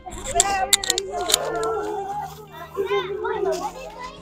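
Overlapping voices of children and adults talking and calling out in a small crowd.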